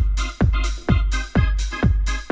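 Acid house club track: a four-on-the-floor kick drum with a falling pitch about twice a second over a sustained bass, with hissing off-beat hi-hats and synth chords.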